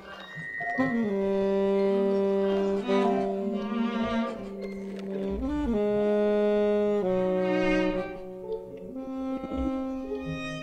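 Free-improvised music for saxophone, EWI, keyboards and live electronics: long held notes that change pitch every second or two, with short bends between them, growing softer near the end.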